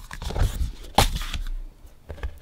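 A vinyl LP being handled: rustling and soft low knocks as the record is lifted and moved above its paper sleeves, with one sharp tap about a second in.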